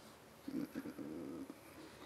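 A man's faint, low, rough throat sound, lasting about a second.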